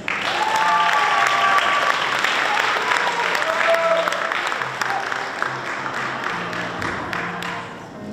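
Audience applause that breaks out suddenly, with a few shouts in it, and fades away near the end. Quiet background music carries on underneath.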